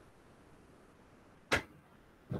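Faint steady hiss, then one sharp knock about one and a half seconds in, brief and much louder than the hiss.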